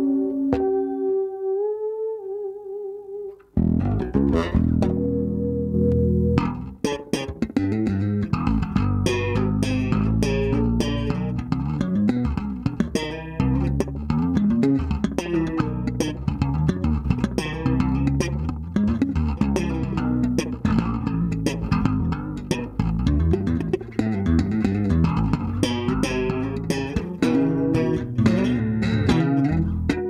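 Chowny SWB Pro active electric bass played through a Chowny Bass-Mosphere pedal with chorus and a little small-room reverb combined. A few soft held notes, then from about three and a half seconds in a busy run of finger-plucked notes.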